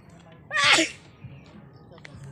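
A man sneezing once, about half a second in: a short, loud burst whose voice drops in pitch.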